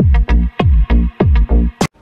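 Electronic dance music driven by a heavy bass kick drum, about three kicks a second, each dropping in pitch. It cuts off abruptly just before the end after a short sharp hit.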